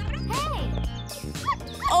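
A small dog barking a few short times, the first bark the loudest, over background music.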